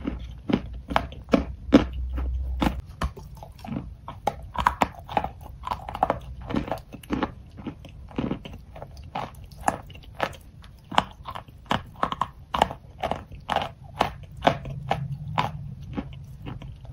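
Close-miked chewing of a chalk block: a dense run of dry crunches, about two to three a second.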